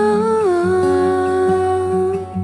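A singer humming a long, wordless "hmm" in a pop ballad. The note steps down to a lower pitch about half a second in and is then held, over the song's instrumental backing.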